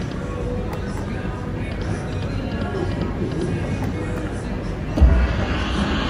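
Casino floor hubbub of background chatter and electronic slot machine music while the reels spin. About five seconds in comes a sudden heavy bass drum hit from the Dancing Drums Explosion slot machine as its drum symbols land.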